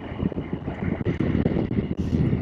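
Riding noise from a Triumph Tiger 800 XRX at road speed: steady wind rush on the microphone over the low running note of the bike's three-cylinder engine.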